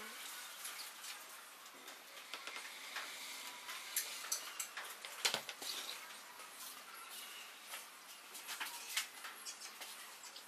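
Light taps, clicks and scrapes of a pen, wooden gauge pieces and a metal rule being handled on a wooden workbench, irregular, with a few sharper knocks around the middle and near the end.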